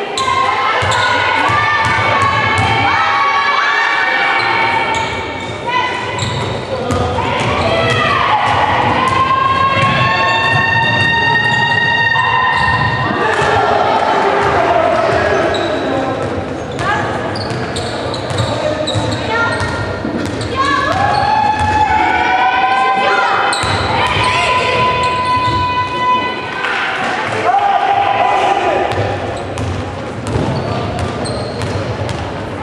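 Basketball being dribbled and bouncing on a gym floor during a girls' game, with players and spectators shouting and calling out in a large indoor hall.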